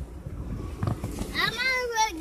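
A child's high-pitched voice calls out in the second half, with its pitch swooping up and down, over low rumbling noise from the phone moving about.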